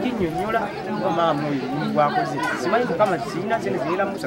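Only speech: a man talking continuously.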